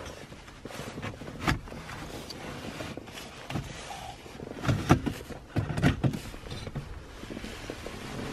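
Scattered clicks, knocks and light scraping of a BMW Business CD player's metal casing being slid out of its slot in an E39 5 Series dashboard, with a cluster of knocks about five to six seconds in.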